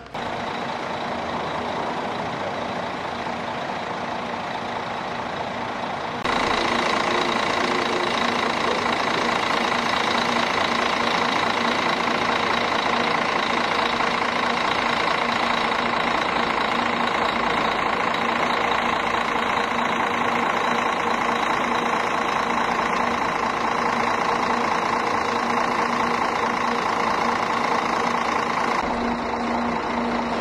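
Double-decker coach's diesel engine idling steadily with an even hum, louder from about six seconds in.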